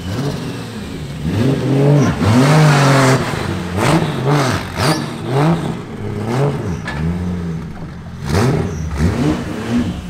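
Toyota 2JZ inline-six in a BMW E46 M3 drift car revving hard while drifting, its pitch rising and falling many times in quick succession, loudest about two seconds in.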